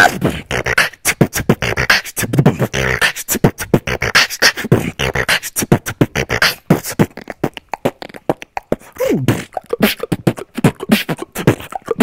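Human beatboxer performing into a handheld microphone: a fast, irregular run of sharp mouth-percussion hits mixed with pitched vocal sounds that glide up and down in places.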